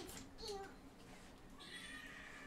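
A faint, short cat meow about half a second in, over quiet room tone.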